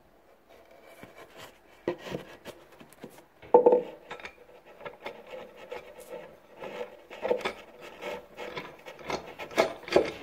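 A long threaded bolt being turned by hand through a drilled hole in the wooden bottom of a nightstand, its threads rasping and scraping against the wood in uneven strokes, with a sharper knock about three and a half seconds in.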